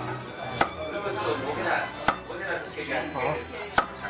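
Chinese cleaver slicing a firm vegetable into thin pieces on a wooden chopping board: three sharp knocks of the blade on the board, about a second and a half apart, with softer cutting and scraping sounds between them.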